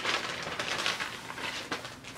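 Packaging rustling and crinkling as a neoprene bikini is handled and pulled out of it.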